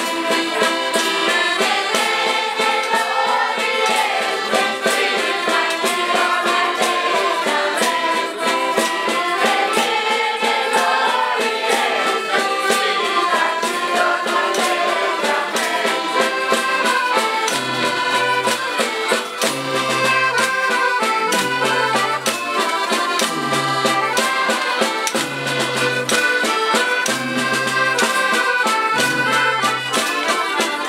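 Several accordions play a lively traditional folk tune while a crowd sings along, with a tambourine and other hand percussion ticking out the beat. About halfway through, a deep bass note starts to pulse roughly every two seconds under the music.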